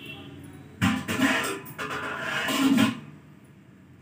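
Water poured from a glass into a steel pan of chutney cooking on high flame: a pour lasting about two seconds, starting just under a second in.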